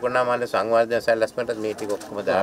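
Speech: a man talking animatedly.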